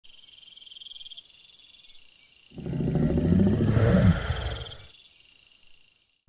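A deep, loud dinosaur roar sound effect, about two and a half seconds long, starting midway, over a bed of chirping insects.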